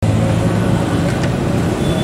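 Loud, steady street traffic noise with motor vehicle engines running, starting suddenly.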